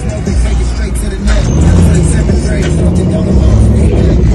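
A car engine revving up about a second in and then held at high revs, loud, with music playing underneath.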